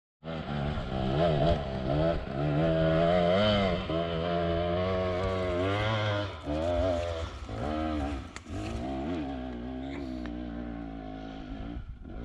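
Dirt bike engine revving hard on a steep hill climb, its pitch rising and falling again and again with the throttle, growing fainter toward the end as it climbs away.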